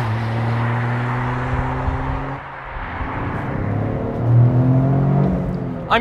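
Toyota GR Corolla's turbocharged 1.6-litre three-cylinder engine pulling under acceleration, a steady engine note that eases off briefly about two and a half seconds in, then climbs in pitch again and is loudest near the end.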